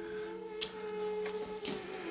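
Soft background music, a held chord of a few sustained notes, with a couple of faint clicks about half a second and a second and a quarter in.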